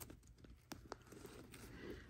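Faint clicks and scratches of a fingernail picking at protective plastic film stuck on a handbag's metal hardware, a few sharp ticks among them.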